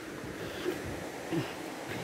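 Steady rush of a swollen, muddy river running high after a night of rain.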